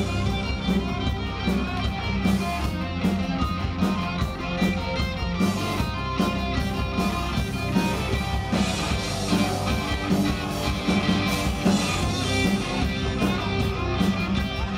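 Live punk rock band playing an instrumental stretch: electric guitars, bass and drums keep a steady beat, with no singing.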